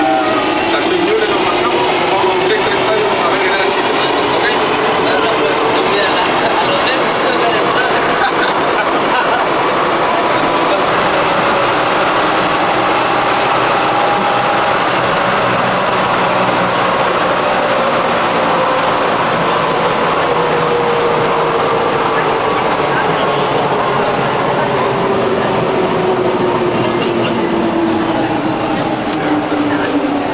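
Inside a metro train car: steady running noise with an electric motor whine that rises as the train gathers speed at the start, and falls again near the end as it slows.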